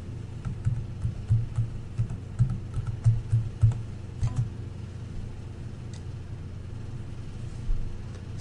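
Computer keyboard being typed on in an uneven run of keystrokes for about four seconds, then one more click a little later, over a steady low hum.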